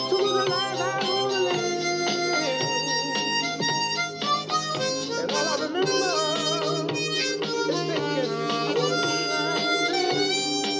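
Harmonica played with cupped hands, mostly long held notes with a wavering vibrato and slides between pitches, over a recorded backing track of the song.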